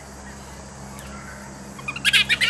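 A lull in the animal calls: a steady low hum and background noise, with one faint click about halfway through.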